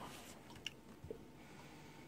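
Near silence in a small room, with a couple of faint clicks about half a second apart as a glass of milkshake is picked up and handled.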